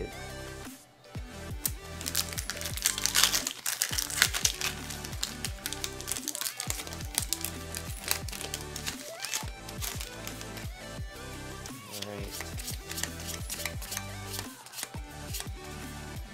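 Foil booster-pack wrapper crinkling as it is torn open and peeled back, loudest a few seconds in, over background music with a steady bass beat.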